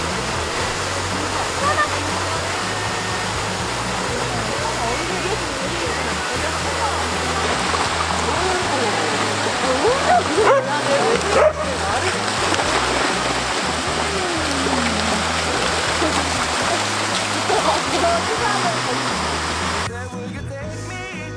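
Steady rush of a waterfall and creek under background music with a slow bass line, with border collies barking and whining, loudest around the middle.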